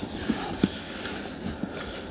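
Light rustling and a few soft knocks of a person getting into a car's driver's seat and settling in, over a faint steady hiss.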